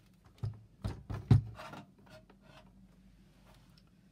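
A small plastic sewing machine being moved and set down on a cutting mat: a handful of knocks and clicks in the first two seconds, the loudest just over a second in.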